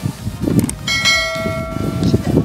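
A bell-chime notification sound effect rings out about a second in and holds to the end, the ding that goes with a subscribe-button and bell-icon animation.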